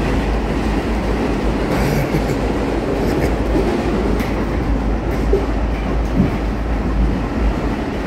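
Subway train running on its rails, heard from inside the car: a steady rumble with a few faint clicks along the way.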